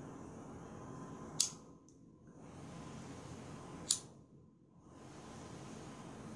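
A disposable lighter struck twice, two sharp clicks about two and a half seconds apart, while the tier lights it to melt monofilament on a bead.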